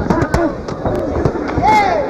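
Boxing gloves landing in a quick exchange of punches: a run of sharp pops in the first second, with shouting voices over it.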